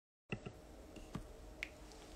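A few short, sharp clicks: four of them, irregularly spaced, over faint room hum, starting a moment after a brief silence.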